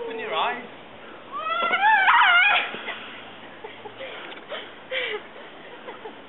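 High-pitched voices squealing and whooping without words, in short rising-and-falling cries, loudest at about one and a half to two and a half seconds in.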